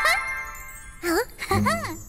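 A bright, tinkling cartoon sparkle effect that peaks at the start and fades over about half a second. About a second in come short sliding, arching pitched sounds: a cartoon voice or comic effect.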